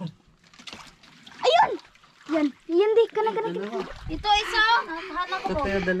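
Water splashing and sloshing in a shallow, muddy fishpond as people wade and work their hands through it, with voices talking over it.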